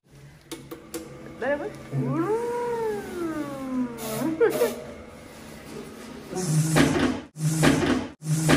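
A person's long, drawn-out vocal sound that rises and then falls in pitch. Near the end, a hotel's electric shoe-polishing machine runs: its rotating brushes whir against a shoe over a low motor hum, in short spurts with brief gaps.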